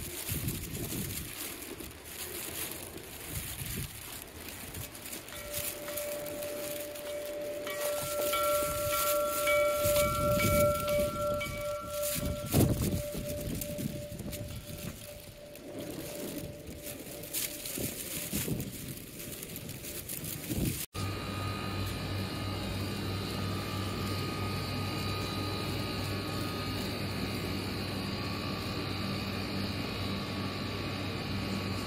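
Wind and outdoor noise, then a hanging bell ringing, its tones lingering for several seconds, with a loud strike about twelve seconds in. After a sudden cut, a steady low hum.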